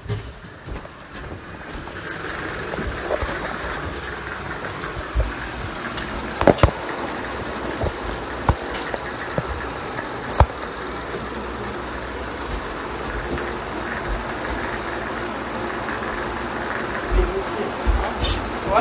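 Handling noise from a phone camera being carried and set down: rubbing and a few sharp knocks, the loudest about six and ten seconds in, over a steady background hum.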